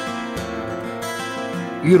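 Background music: acoustic guitar strumming, with the narrator's voice coming back in at the very end.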